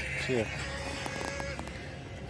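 A man says a short "yeah", then only a faint, steady background hum with a few faint ticks remains.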